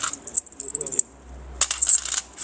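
Loose metal coins clinking together as they are handled: two spells of quick, bright clicks with a short pause about a second in.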